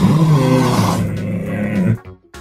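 A dinosaur roar sound effect played for a Cryolophosaurus: one long, low, rasping roar that is loudest at its start and cuts off suddenly near the end.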